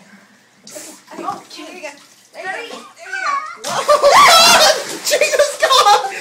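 Water splashing in a bathtub while a cat is washed, under laughing voices. About three and a half seconds in it turns loud, with a high wavering cry over the splashing.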